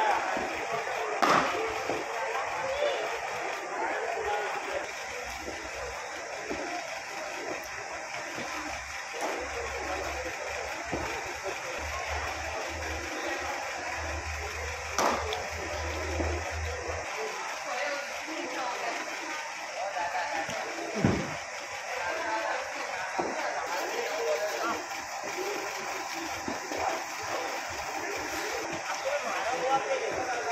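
Indistinct chatter of several voices with no clear words, broken by a few sharp knocks: about a second in, around the middle and once more a few seconds later.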